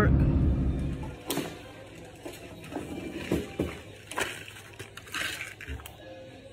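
Low car-cabin road rumble that stops about a second in. Then comes a quiet room with faint, scattered clicks and knocks of small objects being handled.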